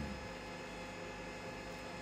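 Steady, low-level electrical hum with a faint hiss under it: background room tone.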